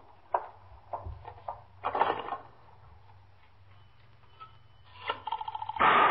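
Radio-drama sound effects of a wall telephone being used: a few sharp clicks about half a second apart in the first second, then a quieter stretch. Near the end comes a sudden loud burst of noise.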